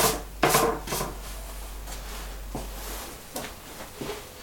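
A few short knocks in the first second as a potter's seal stamp is pressed onto the soft clay base of a hand-held pot, then faint rubbing of hands on clay.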